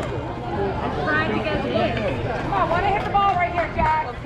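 Several people talking and calling out over one another, with no single clear voice.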